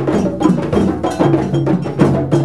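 A djembe ensemble playing a fast, dense interlocking rhythm with bare hands, over pitched low notes from stick-played bass drums.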